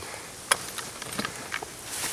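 Handling noise from a digital hanging scale and weigh-sling cord: one sharp click about half a second in, then a few fainter ticks, over a steady outdoor hiss.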